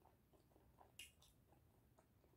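Faint chewing of a peanut-butter bagel with banana: soft, wet mouth sounds about three or four times a second, with one sharper click about halfway through.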